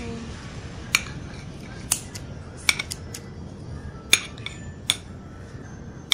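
Metal tongs clinking against a grill pan while turning pieces of grilling meat: about five sharp clicks spaced roughly a second apart, over a faint steady hiss.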